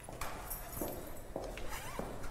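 Scattered light knocks and clicks in a quiet room, with a short rising squeak near the end.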